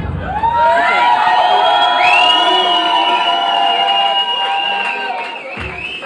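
Concert crowd of young fans screaming and cheering, many high voices holding long shrieks at once, with the backing beat stopped; the screaming swells within the first second and tails off near the end.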